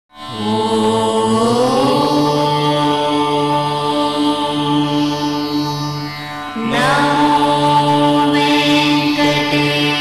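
Indian devotional intro music of long held, drone-like tones. The pitch slides upward early on, dips briefly, then a new phrase swells in and slides up again about two-thirds of the way through.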